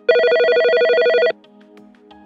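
A telephone ringing: one loud, rapidly trilling ring lasting about a second, then a quiet steady music bed.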